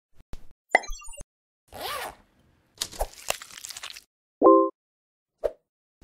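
Animated-intro sound effects: a few quick clicks and pops, a glitchy burst of little chirping tones, a whoosh, then a crackling rush. The loudest is a short pitched, chime-like tone about four and a half seconds in, followed by one last small pop.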